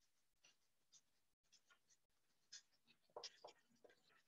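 Faint scratching strokes of a marker pen writing block letters on paper, a quick series of short strokes, a little louder after about three seconds.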